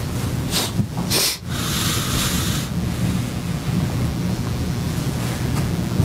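Steady low hum and rumble from the courtroom microphone feed, with two short rustles about half a second and a second in and a brief hiss around two seconds in.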